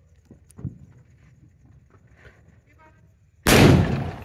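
A firecracker exploding on the ground: one sharp, loud bang about three and a half seconds in, trailing off over about a second.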